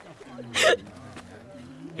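A woman sobbing: one sharp, catching sob about half a second in, then softer voiced crying.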